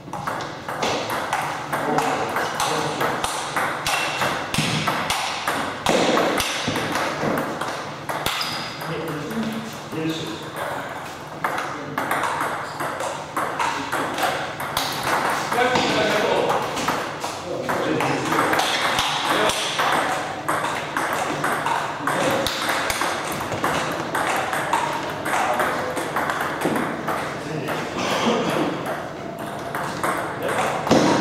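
Table tennis rallies: the ball clicking off rubber paddles and bouncing on the table, many quick clicks in succession.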